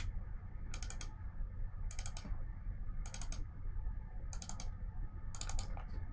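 Computer mouse double-clicking in five short bursts of sharp clicks, about one burst a second, over a faint low steady hum.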